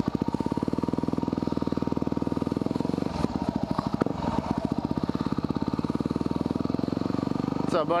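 2010 Yamaha WR250R dual-sport's single-cylinder four-stroke engine running at low revs with steady, rapid firing pulses as the bike moves off slowly. Two short knocks come about three and four seconds in.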